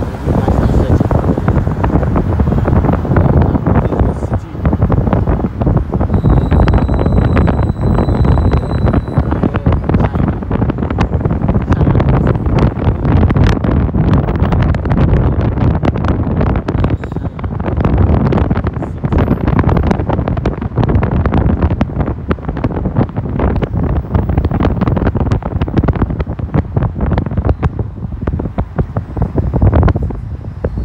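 Wind buffeting the microphone of a phone filming from a moving car, loud and gusty, over road and traffic noise.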